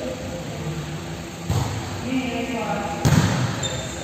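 A volleyball struck twice in a gym hall, a lighter hit about a second and a half in and a louder one about three seconds in, each ringing in the hall, with players' voices calling around them.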